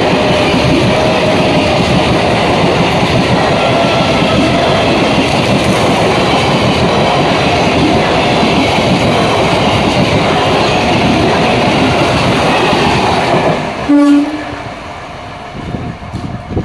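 ICF-built electric multiple unit (EMU) local train passing close at speed: a loud, dense clatter and rumble of wheels and coaches over the track for about thirteen seconds. A short train horn blast sounds near the end, after which the sound falls away quieter.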